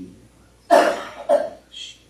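A person coughing twice, hard and abruptly, about half a second apart.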